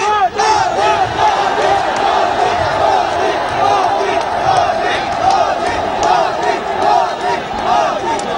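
A large rally crowd shouting and cheering, many voices overlapping at once, loud and unbroken.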